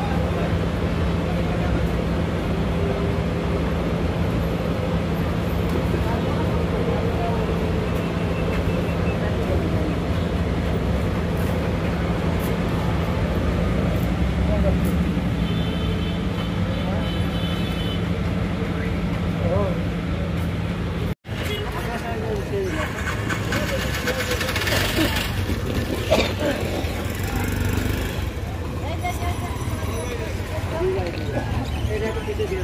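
Bus-stand street noise: a large bus engine idling nearby with a steady low hum, under traffic and people's voices. About two-thirds of the way through the sound cuts out for an instant, and afterwards the hum is gone, leaving busier street traffic and voices.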